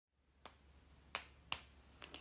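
Three sharp finger snaps: a faint one about half a second in, then two louder ones in quick succession just after a second.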